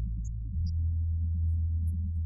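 Instrumental karaoke backing track heard only in its low end: a deep, steady synth-bass note, held from about half a second in, with everything above the bass cut off.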